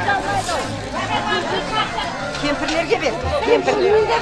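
A group of women talking over one another in lively chatter, with music playing faintly underneath.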